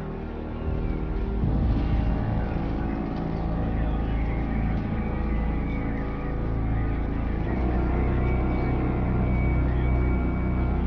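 Dark, droning background music over a steady low rumble, with sustained tones and no clear beat.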